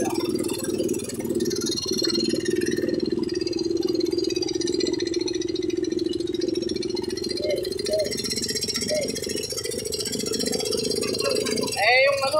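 An engine drones steadily at an even pitch while crossing floodwater, fading out shortly before the end. A loud, short rising sound comes right at the end.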